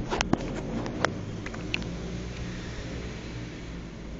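Ozito drill running steadily, its chuck spinning the shaft of a scrap DC motor that is being driven as a generator, with a few sharp clicks in the first second. The chuck is not tight on the motor shaft.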